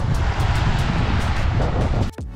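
Wind buffeting the camera microphone as a loud, steady low rumble, with small waves washing up on the sand beneath it.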